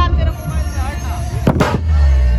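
Dhumal band music with heavy bass drum pulses, the melody paused, and one sharp, loud crash about one and a half seconds in.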